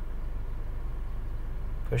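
A steady low machine hum, like a motor or engine running, holding an even level throughout.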